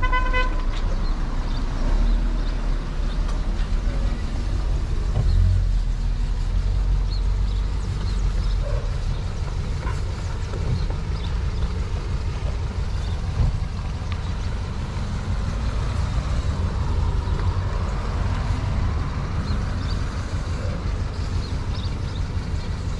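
Steady low outdoor rumble, with a brief vehicle horn toot right at the start.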